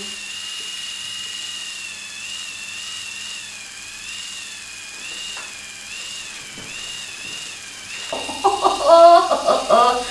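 Braun Face 810 facial epilator running against the upper lip, plucking out facial hairs: a steady high whine whose pitch wavers up and down as it is worked over the skin. Near the end a woman's voice comes in over it.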